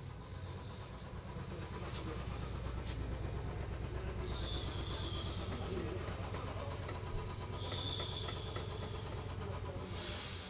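Hands massaging cream over a man's forehead and face, a steady low rubbing rumble with a fine rapid flutter. Two brief high-pitched tones sound about four and a half and eight seconds in.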